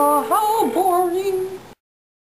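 A young woman singing a wordless tune, breaking off abruptly about three-quarters of the way in, followed by silence.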